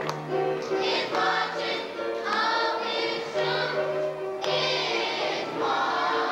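A children's choir singing a gospel song together, with many voices blending.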